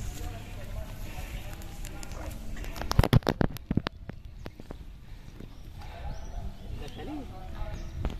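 Background voices of people talking, not close to the microphone, with a short cluster of loud, sharp knocks and clicks about three seconds in.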